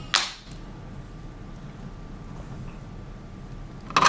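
A single quick swish right at the start, then quiet room tone with a faint steady hum.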